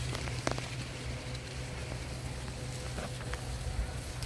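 Footsteps on a grassy dirt path with light crackling of dry corn stalks and leaves, over a steady low rumble on the microphone.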